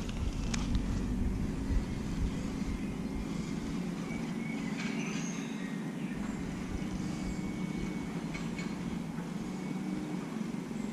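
Baitcasting reel cranked steadily to retrieve a lure, a continuous low whirring, with a few sharp clicks in the first second around the cast.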